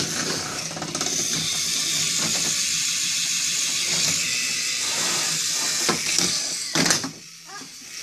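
Small electric motor of a battery-powered toy train running with a steady high whir and the rattle of its plastic gears. A sharp click comes about seven seconds in, and then the sound drops much quieter.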